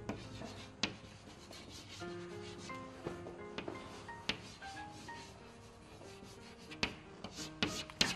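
Chalk writing on a blackboard: soft scratching strokes broken by several sharp taps as the chalk strikes the board.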